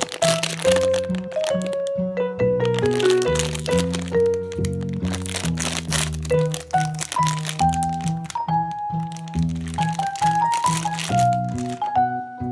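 Foil blind-bag packaging crinkling and crackling as hands handle and open it, over light, bouncy background music with a piano-like melody. The crinkling stops about a second before the end, leaving only the music.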